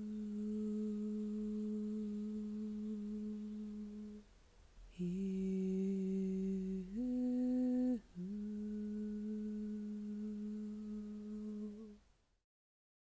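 A voice humming long, steady held notes as light-language toning: one long note, a short break about four seconds in, then a slightly lower note, a brief higher one, and the first note held again until just before the end.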